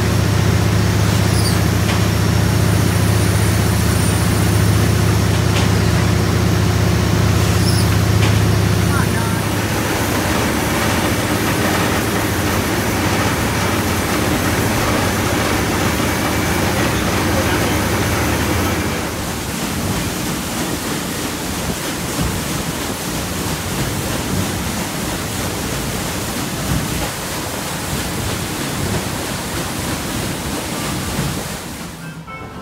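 Machinery in a riverboat's engine room, a loud steady low hum. About nine seconds in the hum changes, and a little before twenty seconds it gives way to a quieter, noisier wash of wind and moving water out by the paddlewheel.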